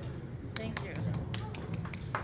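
Scattered hand claps from a small audience, a few people clapping irregularly, starting about half a second in, over a low murmur of crowd chatter.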